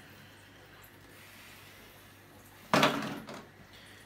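Quiet room tone, then about three-quarters of the way through a single sudden loud bang that fades over about half a second.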